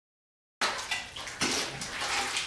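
Water splashing and sloshing in a plastic bucket as a container is dipped in and scooped, starting suddenly about half a second in.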